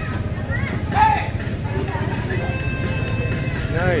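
Steady low rumble of a moving odong-odong, a small motorized neighbourhood trolley train, heard from a rider in its rear car, with music and short bits of voice over it.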